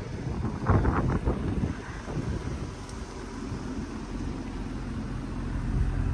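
Low wind rumble on the microphone, with a brief louder gust about a second in.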